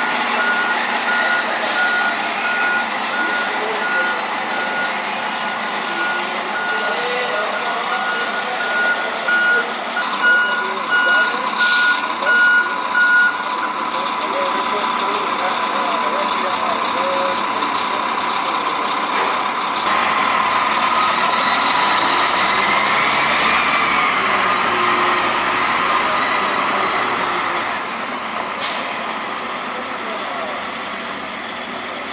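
Heavy multi-axle military truck's diesel engine running as it manoeuvres, its reversing alarm beeping in an even series that stops about thirteen seconds in. A steady whine carries on over the engine after that, broken by a few short sharp bursts.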